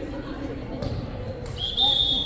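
Two thuds of a volleyball on the hardwood gym floor. About a second and a half in, a referee's whistle starts one long, high, steady blast, the loudest sound here, over low voices echoing in the gym.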